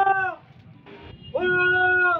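Two long, drawn-out shouted calls from a person's voice, each rising at the start, held on one pitch, then dropping away: a pigeon flyer calling out to the flock circling overhead.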